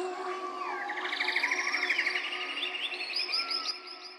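Birds chirping and trilling, with quick sweeping calls and a fast rattling trill, over the held tones of a house track's synth pad as it fades out. Near the end a run of short hooked chirps repeats several times a second while the music dies away.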